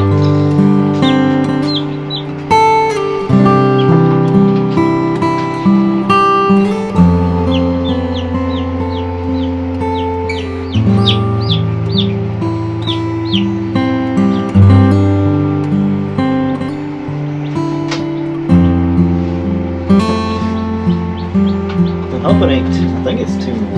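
Acoustic guitar music playing, with the short high peeps of newly hatched chicks heard over it, most of them in the middle stretch.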